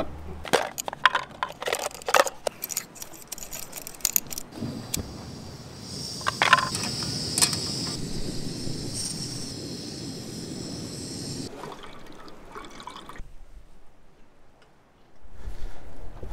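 Camp cooking gear being handled: sharp clicks and knocks of a stainless steel kettle and a screw-on gas canister stove for the first few seconds, then a steady hiss lasting about six seconds that stops near the end.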